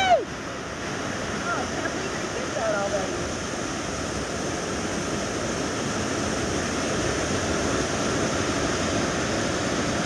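Waterfall pouring into a rock pool: a steady rush of falling and churning water, growing a little louder near the end.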